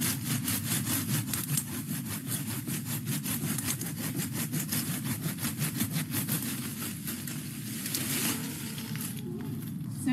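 Hand pruning saw cutting through the woody base of a nandina shrub stem in quick, even back-and-forth strokes. The strokes stop about eight seconds in, once the stem is cut through.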